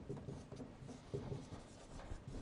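Marker pen writing on a whiteboard: faint, short, uneven strokes as a word is written out.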